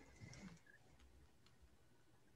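Near silence: faint room tone, with a few faint small sounds in the first half second.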